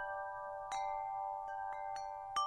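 Bell-like chimes struck in a short sequence, their clear notes ringing on and overlapping: one strike about two-thirds of a second in and two softer ones near the end.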